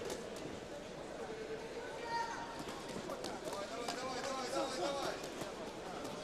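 Boxing arena ambience during a bout: a steady crowd murmur with scattered shouted voices in the middle, and light sharp knocks of footwork and glove contact in the ring.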